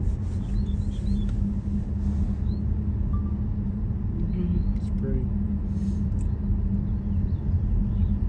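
Steady low rumble of a car driving slowly along a road, heard from inside the car, with short high bird chirps scattered over it from singing northern mockingbirds.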